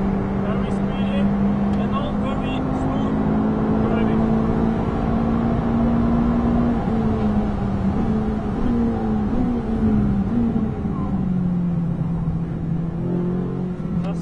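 Ferrari 458 Italia's V8 engine pulling at high revs, its pitch rising slightly. From about seven seconds in it steps down several times in quick succession as the car brakes hard and downshifts, then runs on at a lower pitch. Heard from inside the cabin.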